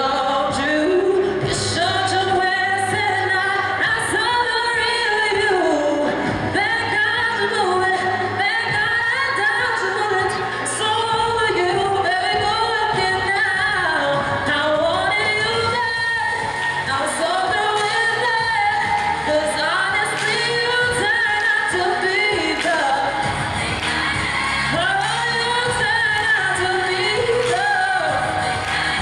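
A solo singer singing into a handheld microphone, amplified, with musical accompaniment.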